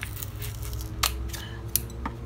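Scissors cutting open plastic cosmetics packaging: a few sharp snips spread through the moment.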